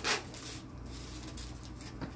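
Paper-and-plastic autoclave sterilization pouch being peeled open, with a short tearing rustle at the start, then faint rustling and small clicks as the mask is handled.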